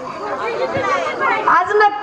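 Several people talking over one another, with a woman starting to speak into a microphone near the end.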